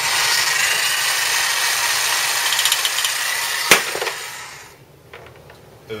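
Corded reciprocating saw running at full speed as a paint shaker, rattling a small model-paint bottle strapped to its blade end, steady for about three and a half seconds. A sharp click follows, and the motor winds down over about a second.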